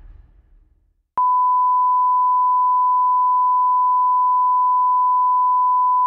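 A steady, loud 1 kHz test tone: a single pure beep that starts abruptly about a second in and holds unchanged, the kind of line-up tone put out between broadcast segments.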